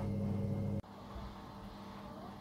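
Steady low hum from a running kitchen appliance stops abruptly under a second in, leaving faint room tone.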